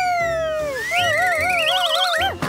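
Cartoon sound effect: a whistle-like tone glides slowly down, then about a second in a wavering, wobbling tone creeps upward in pitch.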